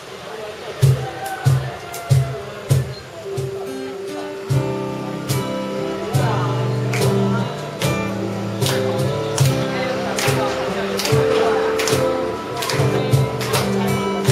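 Live acoustic band: a few sharp drum hits about 0.6 s apart, then from about four and a half seconds in several acoustic guitars come in strumming chords over a steady drum beat.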